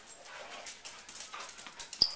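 Two dogs play-wrestling, making a steady run of short scuffling noises.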